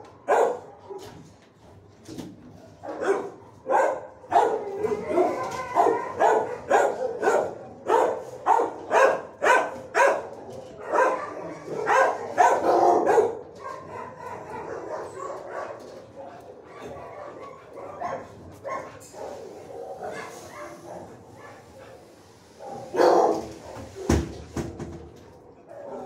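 Dogs barking repeatedly in a shelter kennel: runs of sharp barks, about one to two a second, through the first half, then sparser barking and a last loud burst near the end.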